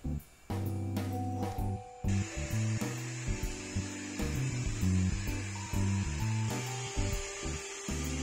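Electric hand mixer with wire beaters running in a bowl of cake batter, starting about two seconds in, beating flour into the egg, sugar and oil mixture. Background guitar music plays under it.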